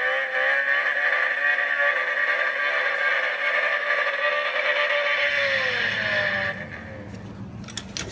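Car engine held at steady high revs, with the revs dropping about six and a half seconds in.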